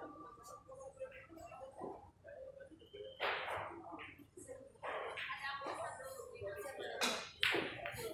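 Pool shot on a 9-ball table: the cue tip strikes the cue ball and billiard balls clack together, heard as a couple of sharp clicks near the end. Background chatter runs throughout.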